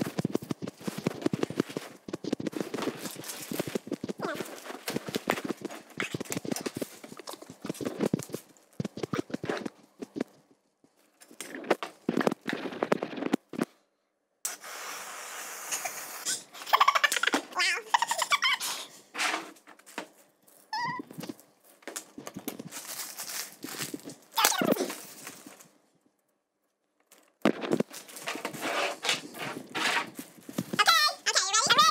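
Quick clattering and knocking of food containers being handled, then, about halfway through, a can of whipped cream sprayed onto a plate in hissing, sputtering bursts. Near the end a plastic bin bag rustles.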